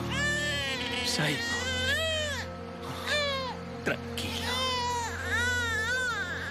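A baby crying in a series of rising-and-falling wails, about one a second, over sustained background music.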